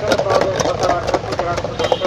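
Wooden hand churner spun between the palms inside a steel jug, rattling against the metal in a quick, even rhythm as it whips the liquid to a froth, with voices talking over it.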